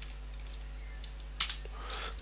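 A few keystrokes on a computer keyboard, the loudest about one and a half seconds in, over a steady low hum.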